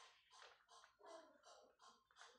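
Faint scratching of chalk on a blackboard as a word is written, in a quick series of short strokes.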